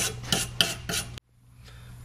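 Rapid back-and-forth abrasive strokes on a steel seat frame, about three a second, as old foam adhesive is scrubbed off the metal by hand; they cut off suddenly a little over a second in, leaving faint room hum.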